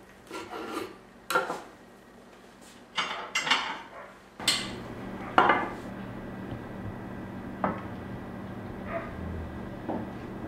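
Knife cutting through a rolled wheat-tortilla wrap on a wooden cutting board: a few short scraping strokes and knocks in the first four seconds. Then, over a steady low hum, a few sharp clinks and taps as the halves are set on a ceramic plate, the loudest about five seconds in.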